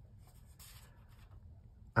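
A faint, short rustle about half a second in, as a hand brushes across the cloth-covered tabletop, in an otherwise quiet room.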